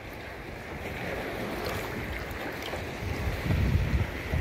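Water sloshing and splashing against the kayak's side as a fish is held in the water by hand and released. Low wind buffeting on the microphone near the end.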